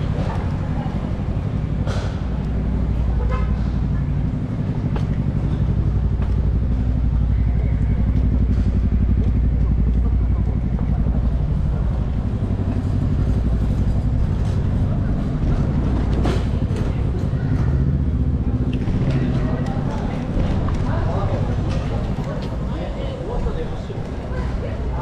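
City street traffic at night: a steady low rumble of car and taxi engines passing close by, with indistinct voices of passers-by.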